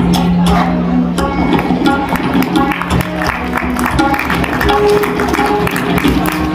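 Tabla played fast and continuously, with rapid strokes on the small right-hand dayan and the larger left-hand bayan. A low ringing bass tone is held for the first few seconds. A short repeating melodic phrase runs behind the drumming.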